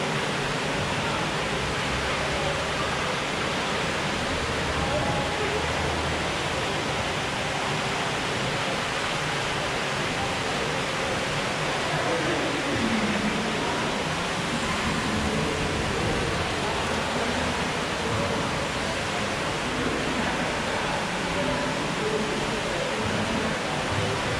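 Steady rushing noise of running water around a theme-park ride boat, with faint voices underneath.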